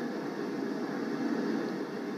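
Heavy storm surf breaking and churning against rocks, a steady rush of water heard through a television's speaker.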